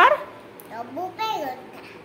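A young child's voice: two short calls whose pitch rises and falls, about half a second to a second and a half in.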